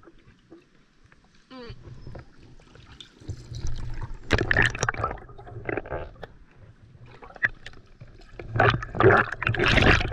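Water sloshing and splashing around a camera held at the surface and dipped underwater by a swimmer, coming in loud irregular surges with a low rumble from about three seconds in.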